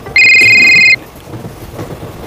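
A mobile phone ringing: a short burst of high, rapidly pulsing electronic ring that stops about a second in.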